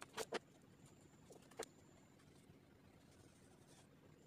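Near silence broken by a few small sharp clicks from hands working pipe-cleaner wire: two close together right at the start and one more about a second and a half in.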